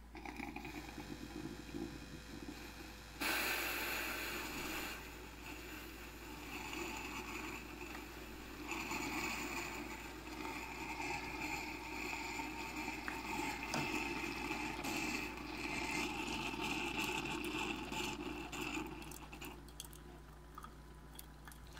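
Cuisinart SS-15 single-serve brewer brewing into a mug: its pump runs steadily as hot coffee pours into the cup. It gets louder about three seconds in and stops near the end.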